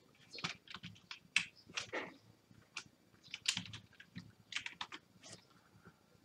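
Typing on a computer keyboard: separate keystrokes at an uneven pace, with short pauses between small runs of keys.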